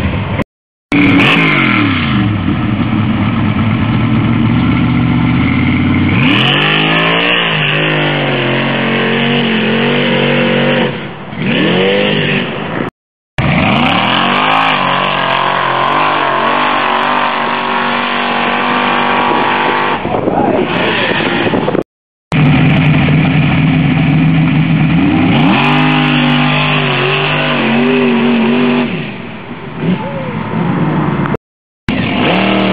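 Lifted pickup trucks' engines at full throttle in a sand-dune hillclimb, revs rising and falling sharply as they run up the sand. The sound comes in three stretches, each broken off by an abrupt cut, about 13 and 22 seconds in.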